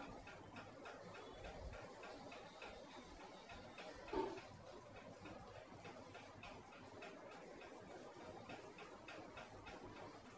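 Faint, even ticking, a few ticks a second, in a quiet room, with one brief louder sound about four seconds in.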